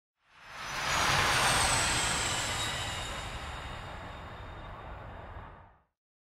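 Jet aircraft passing, used as an intro sound effect: a rushing noise swells within about a second, then slowly fades, with a faint high whine gliding slightly downward, and it stops abruptly just before the end.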